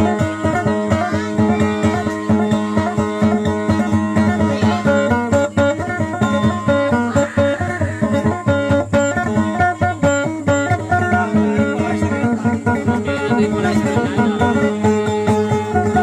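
Acoustic guitar picked fast and continuously in Tausug dayunday style, quick plucked notes over a steady low ringing note.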